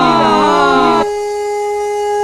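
Stage accompaniment music on an electronic instrument: a cluster of pitched tones sliding downward together, then from about a second in a single steady note held.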